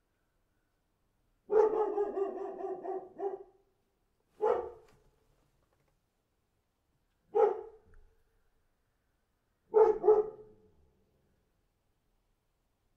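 A dog barking: a rapid run of barks lasting about two seconds, then single barks a few seconds apart, the last a quick double bark.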